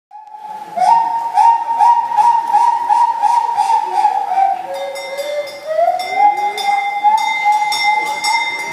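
Harmonica playing a train imitation: a rhythmic chug of bent, rising notes about three a second, fading in at the start, with a held higher whistle-like tone joining about halfway through.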